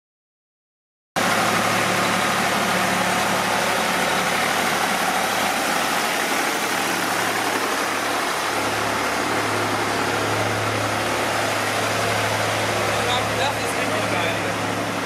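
Farm tractor engine running steadily with a low hum while hauling a covered passenger wagon; the sound cuts in suddenly about a second in.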